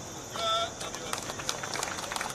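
Scattered hand clapping from a small crowd, a run of sharp irregular claps over a steady hiss, with a brief raised voice about half a second in.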